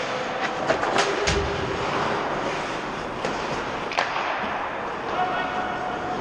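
Ice hockey game sound in a rink: steady background noise with several sharp clacks of sticks and puck, mostly in the first second and again about four seconds in, and players' voices calling out.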